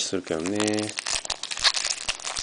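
Foil wrapper of a trading-card pack crinkling and tearing as it is opened by hand, with a short held vocal sound about half a second in.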